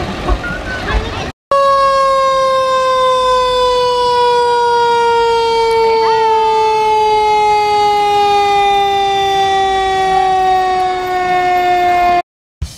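A fire engine's siren sounding one long tone that slowly falls in pitch over about ten seconds. Before it, about a second and a half in, a short stretch of crowd voices cuts off.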